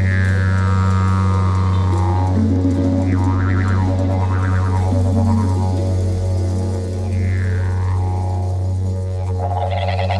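Didgeridoo held on one continuous low drone, with vocalised overtone sweeps riding on it: a long falling whoop at the start, a wobbling passage a few seconds in, another falling sweep later and a brighter burst near the end.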